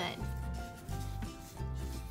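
A baby wipe rubbing over a Baby Alive doll's face and mouth, under soft background music with held notes and a repeating low beat.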